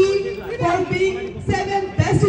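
A single voice speaking; the transcript records no words here.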